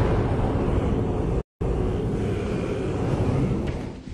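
Loud, dense rumbling sound effect of a TV programme's title sting, with a brief complete cut-out about one and a half seconds in.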